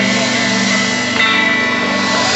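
A live band playing the instrumental closing bars of a reggae song, led by guitar over sustained low notes, with a fresh chord struck about a second in.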